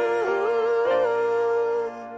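Slow pop ballad with a wordless sung vocal line that glides smoothly up and down in pitch, held without breaks and stopping just before the end.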